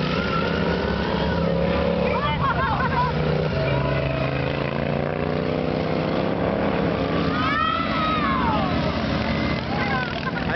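Several racing lawn mower engines running hard together, a steady mechanical drone whose pitch drifts as the mowers race around the track, with one engine note swelling up and falling away about three-quarters of the way through.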